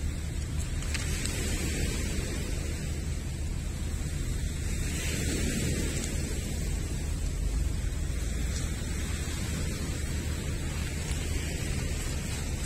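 Steady wind noise on the microphone, a low rush with no breaks, over small waves washing onto a pebble shore.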